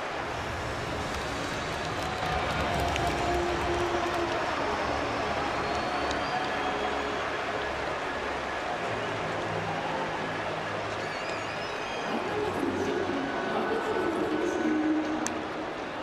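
Steady crowd noise from a packed baseball stadium: a continuous wash of cheering and chatter with scattered single voices rising out of it.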